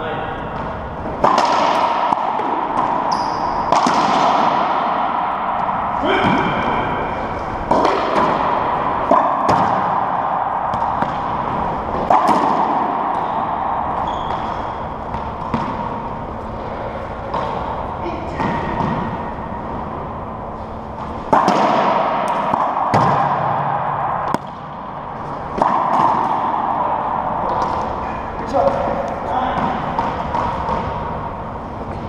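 Racquetball rally: a string of sharp hits of the ball off racquets, walls and the hardwood floor, one every one to three seconds, each ringing on in the echo of the enclosed court, with short high squeaks of shoes on the floor.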